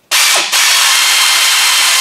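Pneumatic air ratchet run in one burst of about two seconds: a loud, even air hiss with a brief dip about half a second in.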